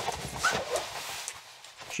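A woman sniffing and breathing in deeply through her nose with her face pressed into a jacket, with the fabric rustling against her.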